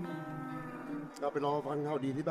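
A man speaks a short line of dialogue over soft background music. It is preceded by a steady, low held tone lasting about a second.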